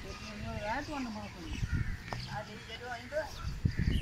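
Faint background voices of people talking, well below the level of the nearby narration.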